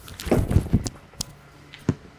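A shot put being thrown from a concrete circle: a burst of shoe scuffing and effort noise from the thrower about half a second in, a few sharp clicks, and one short knock near the end.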